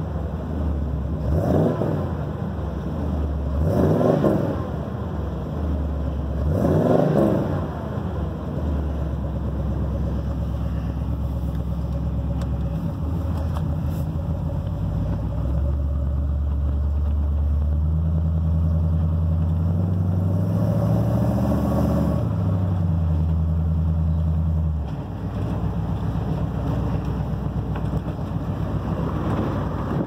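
Dually pickup truck's engine running through its new exhaust (fresh headers and mufflers, no exhaust leaks), under way: three short revving surges in the first several seconds, then a steady low drone that climbs in pitch as the truck accelerates and drops back about 25 seconds in.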